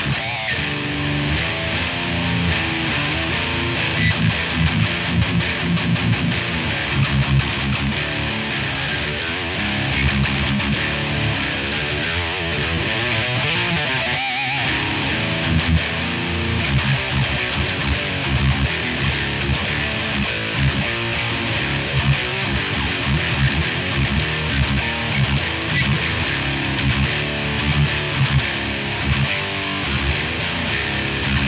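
Electric guitar played through a Martin Kidd-modded Jet City 20-watt amp head, driven by a Maxon OD9 overdrive pedal, playing continuous distorted riffs.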